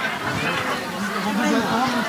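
Overlapping speech: several people talking at once.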